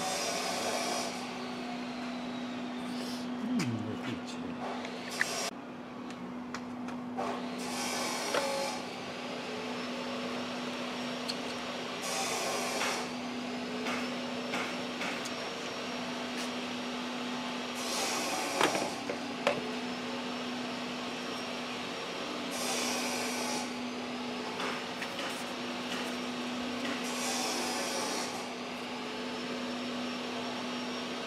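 Clicks and knocks of metal parts as a throttle body is worked free and lifted off the inlet manifold. These sit over a steady low hum and a hissing noise that swells about every five seconds.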